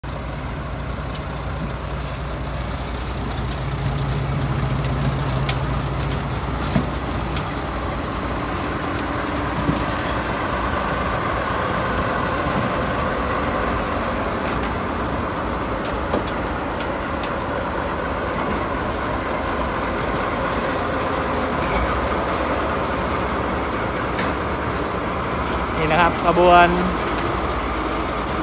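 Diesel locomotives hauling a loaded ballast train passing close by, engines running steadily with a low drone and occasional clicks from the wheels and running gear.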